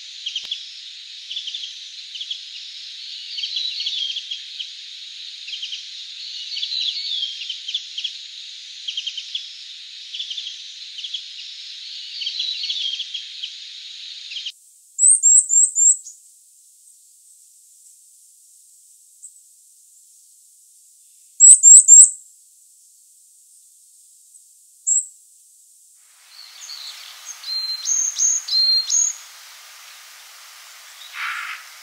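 Japanese white-eye twittering: a dense, continuous stream of short, thin chirps. About halfway through, this gives way abruptly to a varied tit's very high, thin call notes in short quick runs of three or four, then a busier spell of calls near the end.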